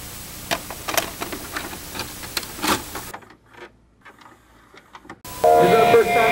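Crackling static hiss full of irregular clicks and pops for about three seconds, which cuts off to a faint crackle. About five seconds in, an amplified electric guitar comes in with held, ringing notes and some bends.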